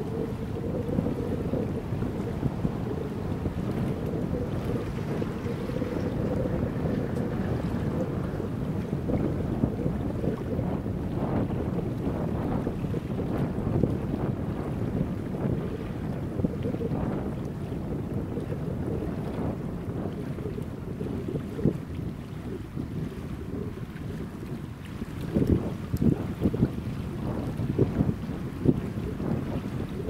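Wind buffeting the microphone: a low, rumbling noise throughout, with stronger gusts near the end.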